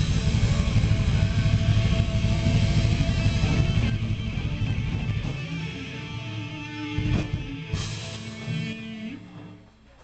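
Live hard rock band (distorted electric guitars, bass guitar and drum kit) playing the closing bars of a song. It is loud and dense for the first few seconds, then thins out, with a sharp drum hit about seven seconds in, and the last chord fades almost to nothing at the end.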